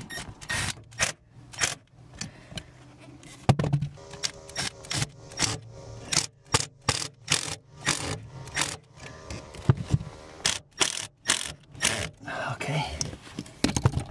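Cordless drill with a screwdriver bit driving screws into the convertible top's metal frame rail: short runs of the motor broken by a long string of sharp clicks.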